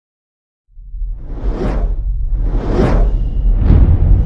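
Sound effects of an animated logo sting: after silence, a deep rumble starts suddenly under a second in, and three whooshes sweep over it, the last the loudest.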